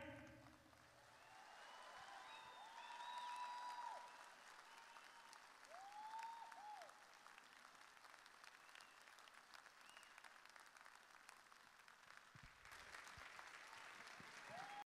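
Faint audience applause from an ice-show crowd as the music ends, with a few short cheers in the first seconds.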